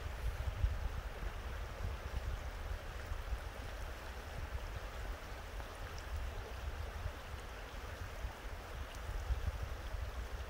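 Shallow forest creek flowing over rocks, a steady rushing of water, with a fluctuating low rumble underneath.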